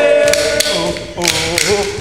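A group of voices chanting together in a traditional-style song, over sharp percussive hits about twice a second from the dancers' clapping and stamping on the stage.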